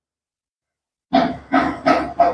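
A dog barking in a quick run, about two or three barks a second, starting about a second in after dead silence.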